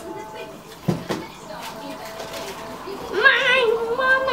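A single soft knock about a second in, then a child's high voice giving a drawn-out, wavering vocal sound near the end.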